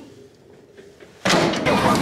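A few faint knocks, then about a second in a sudden jump to loud drag-strip sound: race car engines running at the starting line, with voices.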